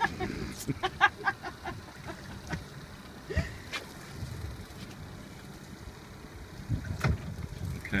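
A person laughing in short repeated bursts during the first two seconds, then steady wind on the microphone with a few scattered knocks.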